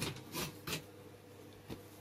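Wooden honey frames being handled in a wooden hive box: two short scrapes of wood on wood within the first second, then a single light knock near the end.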